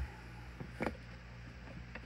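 Faint handling noise: a couple of soft clicks over a steady low hum.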